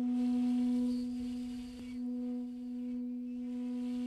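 One long, steady note held on a homemade flute cut from a hollow Japanese knotweed (Fallopia japonica) stem.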